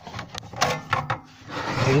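Several sharp clicks and knocks as the gas cartridge of a portable butane cartridge heater is taken out and pushed back in, followed near the end by a short hiss-like noise.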